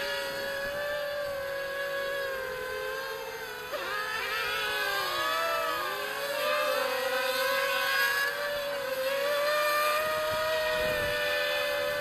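Quadcopter's Racerstar BR2205 2600KV brushless motors and propellers whining in a hover. The pitch wavers as the throttle is corrected, dipping and rising about four seconds in.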